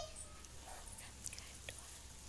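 A child's high, drawn-out call trails off right at the start, leaving faint background hiss with a few soft clicks.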